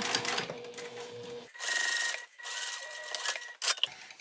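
Sewing machine running as it top-stitches through layered cotton fabric, stopping about a second and a half in. It is followed by two stretches of a higher mechanical whir and a few light clicks near the end as the work is freed.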